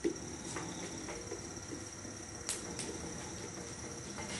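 Light clicks and knocks as a leather-hard clay pot is handled on a potter's wheel head, the clearest about halfway through. A faint steady high-pitched whine runs underneath.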